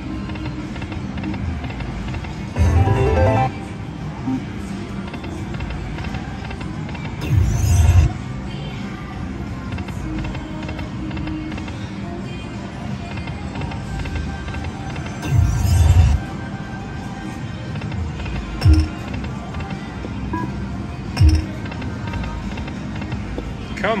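Lightning Link 'High Stakes' video slot machine playing its reel-spin sounds over steady casino background music and chatter. Three louder bursts come about 3, 7.5 and 15.5 seconds in, and two short thumps come near the end.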